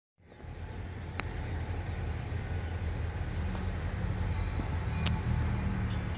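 Distant diesel freight locomotive running, a steady low engine rumble that grows slightly louder, with two sharp clicks, about a second in and near the end.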